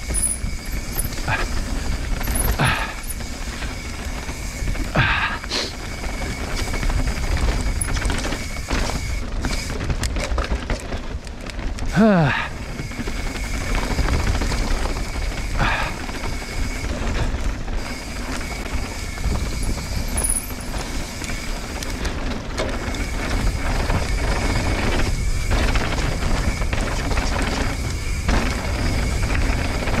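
Mountain bike descending a dirt downhill trail, heard from a bike-mounted action camera: steady wind rush on the microphone and tyre noise over dirt, with scattered knocks and rattles from the bike. About twelve seconds in, a short sound falls sharply in pitch.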